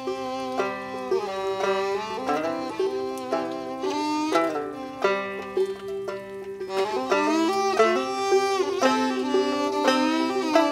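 Fiddle and banjo playing an old-time dance tune together: the banjo picks a steady rhythm while the bowed fiddle carries the melody, sliding up and down between notes.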